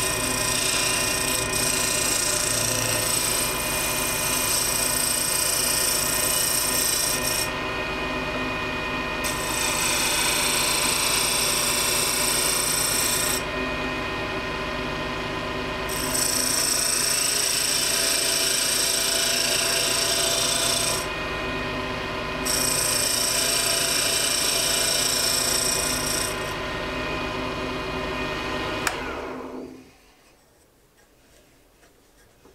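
Wood lathe running with a steady motor hum while a hand-held turning tool cuts a spinning hardwood duck-call blank. There are four passes of hissing, scraping cutting, each a few seconds long, with short pauses between them. The sound stops near the end.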